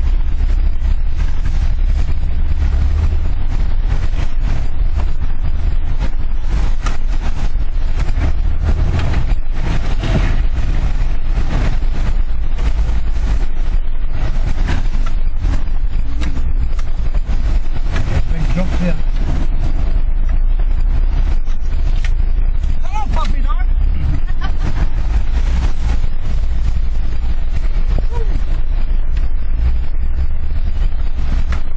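Off-road 4x4 engine running under load, heard from inside the cab as a loud steady low rumble, with frequent knocks and rattles as the vehicle jolts through muddy ruts.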